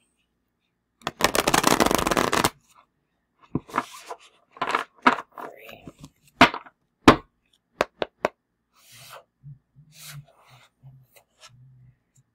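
A new, stiff oracle card deck being shuffled by hand. A rapid run of card flicks about a second in lasts about a second and a half, followed by scattered sharp taps and slaps as the cards are worked loose.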